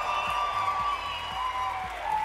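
A large crowd in a big hall cheering and applauding, with a few long, high whistle-like tones held over the noise.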